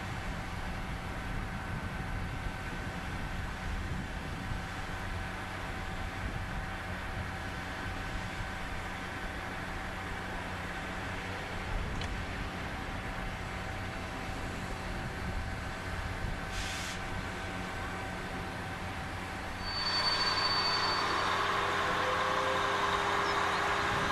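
NS class 6400 diesel-electric shunting locomotive idling with a steady low hum and fixed humming tones. About 20 seconds in, the low hum drops away and a louder, even rushing noise takes over.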